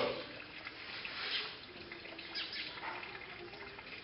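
Quiet background ambience with a few faint, short high chirps and a faint steady hum in the second half.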